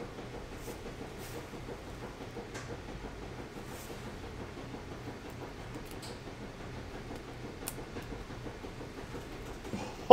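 Faint handling of a small cardboard trading-card box, a few light clicks and scrapes spread out over a steady low background hum.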